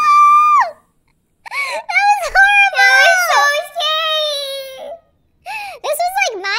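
A high-pitched voice screaming in fright, one long held note that cuts off less than a second in, then after a brief pause a run of wordless wailing and whimpering that wavers up and down for several seconds.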